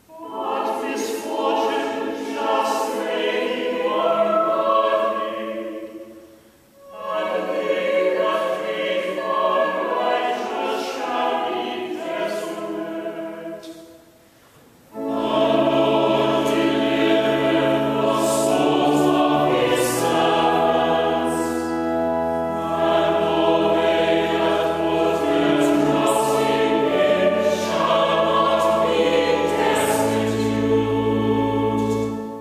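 Church choir singing a psalm to Anglican chant in sustained chords, phrase by phrase, with two short breath breaks between verses. After the second break, low sustained organ bass notes join under the voices.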